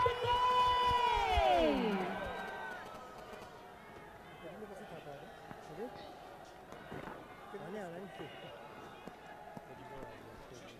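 A long, loud, voice-like call, held steady for about a second and then sliding down in pitch until it fades about two seconds in. Faint stadium ambience follows, with a few distant calls.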